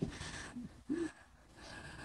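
A person's quiet breathy gasps, with one short voiced sound about a second in: soft laughter.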